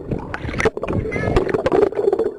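Sea water sloshing and splashing right against a waterproof camera at the surface in the surf, with many small clicks and knocks of water hitting the housing as it dips under the water.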